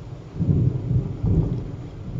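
Thunder rumbling outside during a thunderstorm, heard from inside a room. The low rumble swells about half a second in and rolls on in uneven waves.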